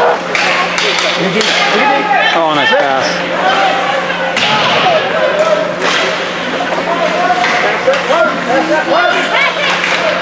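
Hockey spectators at an ice rink shouting and cheering in many overlapping, high-pitched voices, with sharp clacks and thuds of sticks, puck and skates scattered through it.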